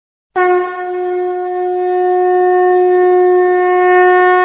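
A ceremonial horn blown in one long, steady, unwavering note that starts a moment in and is held throughout, growing slightly louder as it goes.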